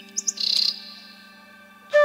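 Bird chirping: two quick high chirps followed by a short, harsher chirp, over a faint steady low drone. A bamboo flute melody comes back in right at the end.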